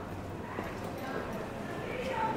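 Footsteps on stone paving, with people talking as they walk past.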